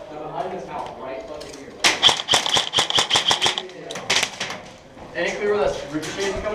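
Paintball marker gunfire: a rapid burst of about seven shots a second lasting nearly two seconds, with a steady high whine under it, then a few more shots about a second later.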